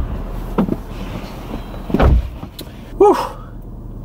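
A person getting into a car: knocks and rustling, then a car door shutting with a low thud about halfway through, followed by a few small clicks and a short voice-like sound near the end.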